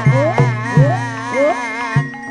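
Live traditional Javanese ebeg accompaniment music. Steady low gong-like tones sit under it, sliding notes rise in pitch two to three times a second, and a high, wavering, buzzy melody runs above.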